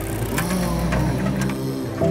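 A motor vehicle's engine running, its pitch rising briefly early on, with faint clicks, under soft background music with sustained notes.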